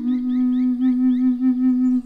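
Contrabass Native American-style flute (pimak) in A holding one long low note, steady in pitch and wavering slightly in loudness.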